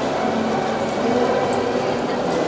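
Crowd of many people talking at once in a large echoing hall, a steady hubbub of overlapping voices with no single voice standing out.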